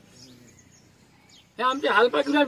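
A faint outdoor background with a few weak chirps, then about a second and a half in a man starts speaking loudly.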